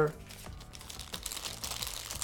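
Clear plastic wrapping crinkling as a wall charger is pulled out of a cardboard phone box, the crinkling getting busier about halfway through.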